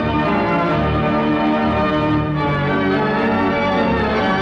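Wurlitzer theatre pipe organ playing full, sustained chords.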